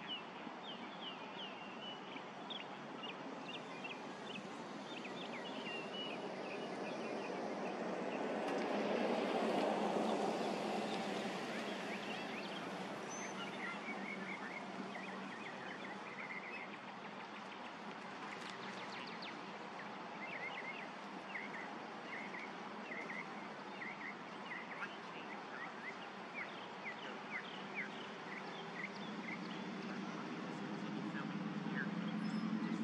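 Outdoor ambience with a steady background hiss and series of short, high chirping bird calls throughout. A broad rushing noise swells and fades about a third of the way in.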